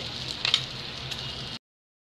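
Rice-flour batter sizzling in the oiled cups of a hot aluminium bánh khọt pan, with a sharp clink of a utensil against the pan about half a second in. The sound cuts off abruptly near the end.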